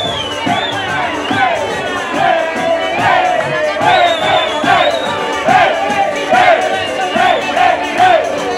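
Folk band music played in the thick of a crowd that sings and shouts along loudly, a repeating melodic phrase over a steady beat.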